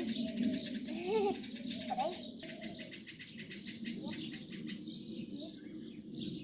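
Birds chirping and chattering in quick, high runs throughout. A voice sounds over them in the first two seconds or so.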